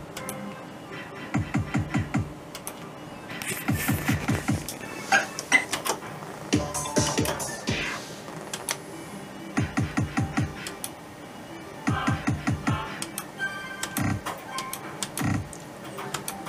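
Merkur Rising Liner slot machine's electronic game sounds: about six spins in a row, each a quick run of low clicking ticks lasting around a second, with short electronic beeps and tones in between.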